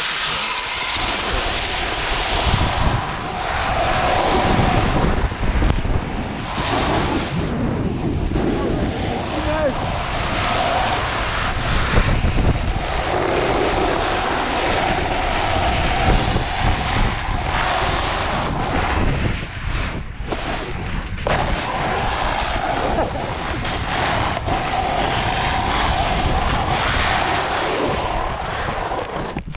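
Wind buffeting an action camera's microphone during a ski descent, mixed with skis hissing and scraping over the snow. The rush is steady and loud, dropping out briefly a couple of times about two-thirds of the way through.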